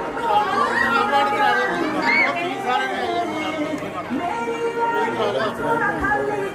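Overlapping chatter of several people talking at once, with no single clear voice.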